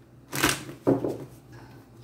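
Tarot cards being shuffled by hand: two short bursts of card noise about half a second apart, then quieter handling.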